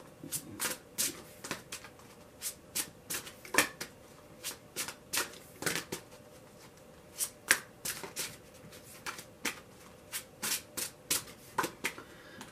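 A tarot deck being shuffled by hand: a quick run of irregular card snaps and slides, a few a second, with short pauses between bursts.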